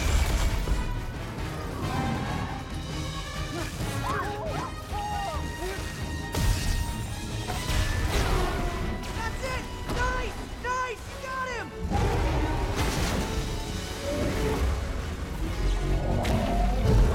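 Action-film battle soundtrack: orchestral score over heavy crashes and a deep rumble of fire and blasts, with short rising-and-falling cries in the middle. The low rumble drops out for a moment just before the end and then surges back loud.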